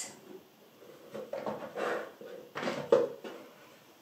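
Small toys being handled and set down on a box on a table, soft rustling with a small knock near the three-second mark.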